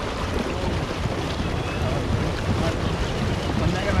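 Wind buffeting the microphone in an uneven low rumble, over a steady wash of lake water around a pedal boat.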